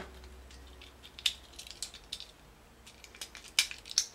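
Small plastic parts of a Transformers Legends class Tailgate figure clicking as it is handled and its leg panels are turned during transformation. There are a few scattered clicks, the sharpest near the end.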